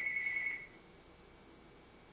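Electronic telephone ringer: one high, rapidly pulsing tone that cuts off about half a second in, leaving a quiet room.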